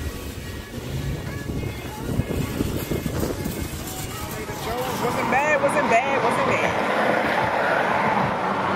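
Outdoor traffic-and-wind rumble on the microphone, then from about four and a half seconds in a louder passage of music with a singing voice.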